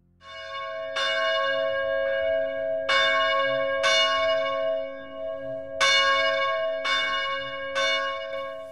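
Church bells ringing: about six strikes at uneven intervals, each ringing on into the next.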